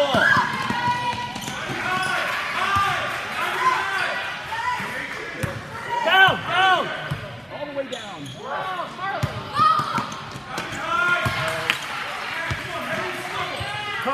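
Basketball bouncing on a wooden gym floor during play, with voices calling and shouting over it throughout.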